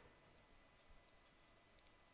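Near silence: room tone, with a few faint computer mouse clicks.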